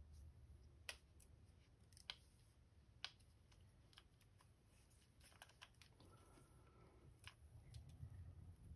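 Near silence with a few faint, sharp clicks about a second apart, from mesh netting in a wooden embroidery hoop being pressed and fitted around a glide bait body.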